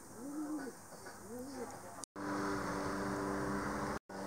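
A dove cooing: three arching coos about half a second apart. About two seconds in, the sound cuts to a steady hum.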